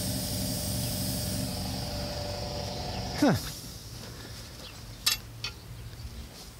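A steady low mechanical hum, with a faint high whine over it, that drops away just after three seconds in. Two sharp clicks follow near the end.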